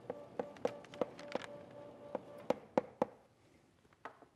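Chalk tapping on a blackboard while writing: a string of sharp, irregular taps, two or three a second. Under them a faint steady hum stops about three seconds in.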